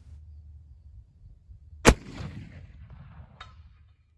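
A single black-powder shot from a .54-calibre 1863 Sharps breech-loading carbine, fired about two seconds in, its sharp report trailing off in a rolling echo.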